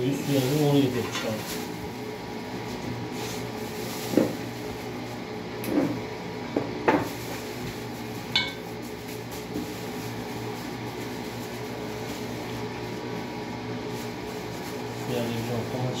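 Pieces of raw meat and vegetables being set by hand into a metal cooking pot: a few soft knocks and sharp clicks over a steady low hum, with brief voices now and then.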